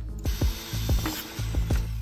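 Background music over a string of light metallic clicks and rattles from a steel chain being handled and measured with a tape measure.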